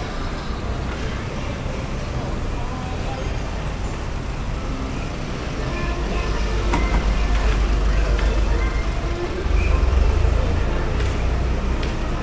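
City street ambience: a steady low rumble of road traffic that grows louder twice, about halfway through and again near the end as vehicles pass close by, with voices and music in the background.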